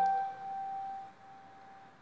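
A single note on a Kimball upright piano, the G above the treble staff, ringing after being struck and fading away over about a second.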